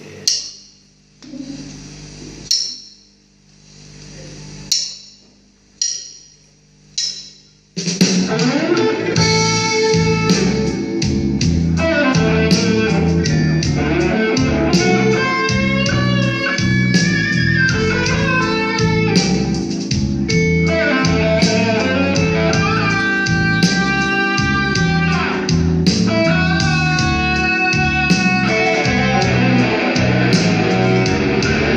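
Electric blues-rock played live. A lead electric guitar plays a few short separated phrases with pauses over the first eight seconds. Then the full band comes in with bass guitar under fast lead guitar lines.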